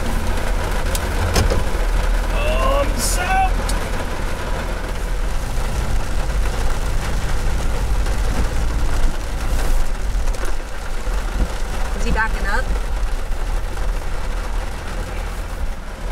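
Heavy rain beating on a pickup truck's roof and windshield, heard from inside the cab over the steady low rumble of the truck's engine running.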